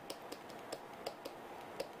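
Faint, irregular light clicks of a stylus tapping and stroking on a tablet screen while handwriting letters.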